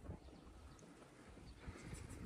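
Near silence, with a few faint low thuds.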